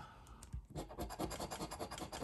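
A coin scratching the coating off a scratch-off lottery ticket in rapid back-and-forth strokes, quickening about a second in.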